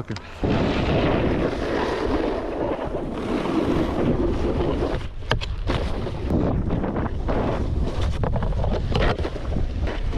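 Snowboard sliding and scraping over chopped-up groomed snow at speed, a steady rushing scrape mixed with wind buffeting the action camera's microphone. A few brief sharp knocks come about halfway through and again near the end.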